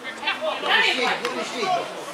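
Speech only: several voices talking and calling out over one another.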